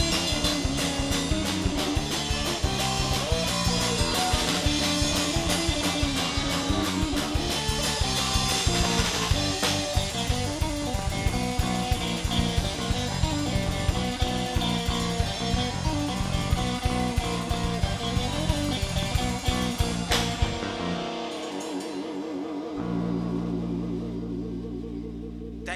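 Live rock band playing: drum kit, electric guitar and bass guitar. About twenty seconds in the drums stop, leaving held guitar and bass notes ringing.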